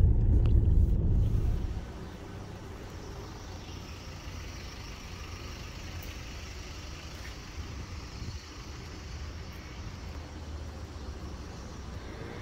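Low rumble of the Toyota Hilux pickup camper's engine and road noise heard from inside the cab, cutting off abruptly a little under two seconds in. After it, a quieter steady hum of street traffic.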